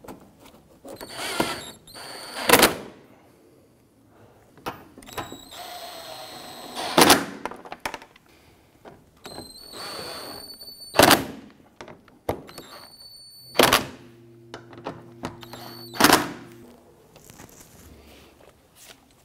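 Plastic splash shield and fasteners being handled and fitted under a car: five sharp knocks spaced a few seconds apart, each after a short rustle of plastic and tools.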